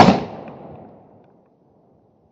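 A single shotgun shot, loud and sharp, its echo dying away over about a second and a half.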